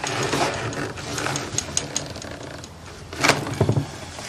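Small objects being handled on a desk: a run of light clicks and rattles, then a louder knock a little past three seconds in.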